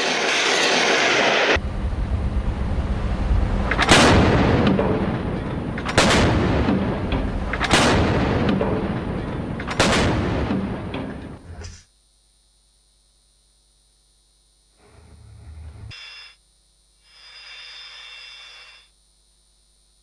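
A ship-launched missile's rocket motor rushing for about a second and a half. Then a warship's deck gun fires four heavy shots about two seconds apart, each dying away, over continuous rumbling. The sound cuts off suddenly about twelve seconds in, leaving only two faint brief noises.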